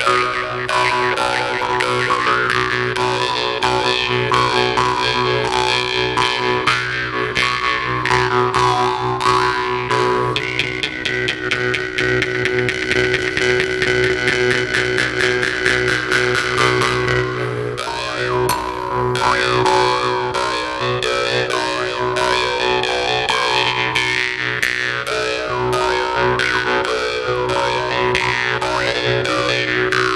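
Two Jew's harps played together: a steady drone under a melody of overtones that shift as the mouths change shape, plucked in a quick, even rhythm.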